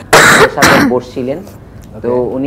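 A person coughing twice, two loud harsh bursts about half a second apart, followed by a few faint voiced sounds.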